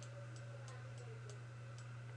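Faint, even ticking, about three ticks a second, over a steady low hum.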